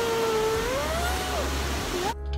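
A young child's drawn-out vocal sound, held on one pitch and then rising before it breaks off about one and a half seconds in, over a steady hiss of background noise.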